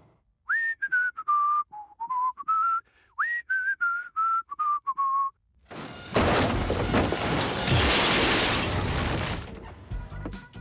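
A person whistling a casual tune in short separate notes that step up and down. About six seconds in, a loud, steady rushing noise takes over for about four seconds.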